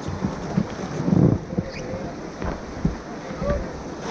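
River current rushing and splashing against the rafts, with wind buffeting the microphone; a louder burst of splashing about a second in.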